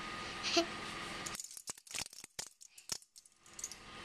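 A toddler's plastic hand-clapper toy clacking in a quick, irregular run of sharp clicks, starting about a second and a half in, after a stretch of steady rushing noise.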